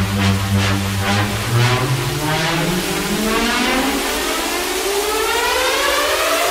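Electronic dance music build-up: the drum hits fade out and a synth riser sweeps steadily upward in pitch, with the bass dropping away about four seconds in.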